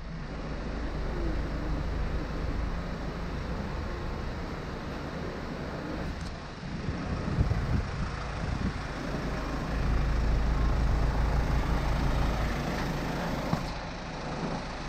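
2003 Kia Sorento SUV's engine idling steadily, a low continuous rumble.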